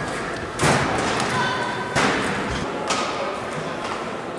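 Badminton rally: rackets hitting the shuttlecock with sharp cracks, three hits about a second apart, the first the loudest. Short high squeaks come in between, typical of shoes on the court floor.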